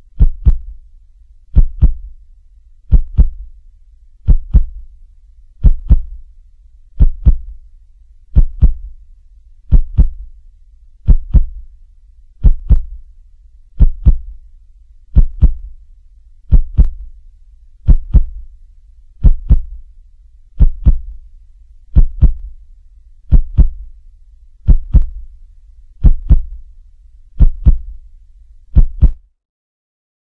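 Heartbeat sound effect: a slow, deep double thump repeating evenly about every 1.4 seconds, stopping shortly before the end.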